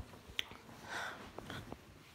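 Faint handling noise from a hand-held phone being moved: a few soft clicks and a brief rustle.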